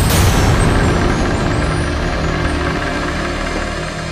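Dramatic TV-serial background score: a loud, low rumbling drone left over from a run of sudden hits, slowly fading away.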